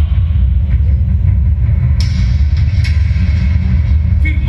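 Loud, steady low rumble of heavy bass from an arena sound system. A sharp click comes about two seconds in and another just before three seconds.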